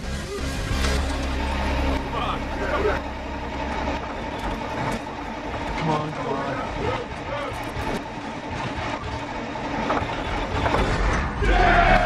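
Background pop music with a sung vocal, playing steadily over a montage.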